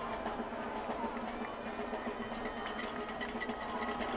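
Band music from the stadium stands, with percussion, playing faintly and steadily under the general stadium background noise.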